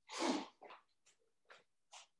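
A person blowing their nose hard: one long, loud blow at the start, then several short blows about every half second.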